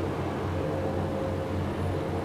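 A steady low drone with a faint steady tone over it, unchanging throughout.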